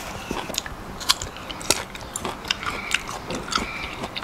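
A man chewing food close to a clip-on microphone: wet mouth sounds broken by irregular sharp clicks and crackles, several a second.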